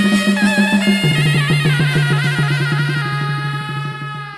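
Chầu văn instrumental passage: a đàn nguyệt (moon lute) plucked in a fast even rhythm of about six notes a second, stepping down to a lower note about a second in, under a higher wavering melody line, with percussion.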